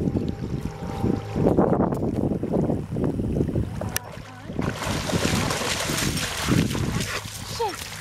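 Dogs splashing through shallow water as they wade ashore, the splashing heavier from about halfway through. Wind rumbles on the microphone in the first half.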